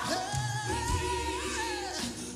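A singing voice holding one long note that rises a little early on and breaks off shortly before the end, with music beneath it.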